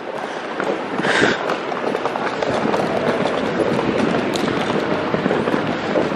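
Hard wheels of a rolling suitcase rattling continuously over stone paving tiles as it is pulled along at walking pace.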